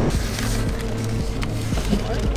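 Steady low drone of a passenger ferry's engines and ventilation, heard inside the cabin.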